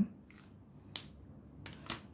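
A few small, sharp clicks over quiet room tone: one about a second in and two close together near the end.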